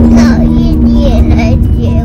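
A young child crying, his voice wavering and breaking, over soft background music, with the low rumble of road noise inside the car.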